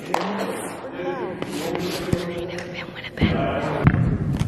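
Indistinct voices and chatter in a large echoing gym, with a few sharp knocks scattered through; it grows louder near the end.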